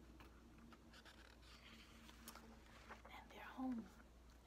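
Faint rustle of a hardcover picture book's paper page being turned, with a brief vocal murmur near the end.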